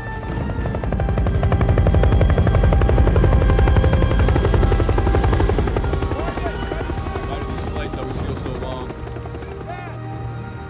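Helicopter rotor chopping rapidly, swelling to its loudest about three to four seconds in and then fading away, as in a pass-by, under a film's music score.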